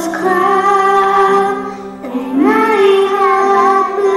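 A group of young children singing together into microphones, in two long held phrases with a short dip between them about halfway through.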